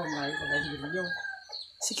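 A rooster crowing: one drawn-out call that dies away a little over a second in.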